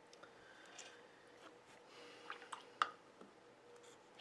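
Faint handling noises from watercolor painting tools: a few small clicks and taps about two to three seconds in, the sharpest one near the end of that cluster, over a faint steady hum.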